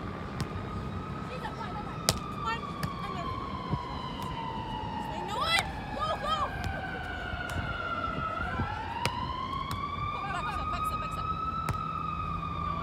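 A siren wailing slowly: its pitch falls for about six seconds, then rises again. Sharp knocks and a few short squeaks sound over it, a cluster of them about five to seven seconds in.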